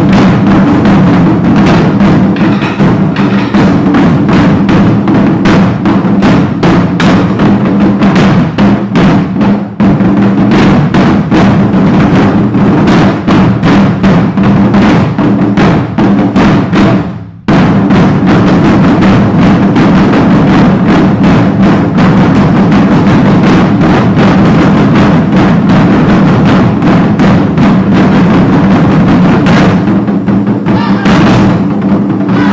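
An ensemble of barrel drums played with sticks, many drummers striking in unison in a dense, fast rhythm. The drumming is loud and continuous, with a brief stop a little past halfway before it picks up again.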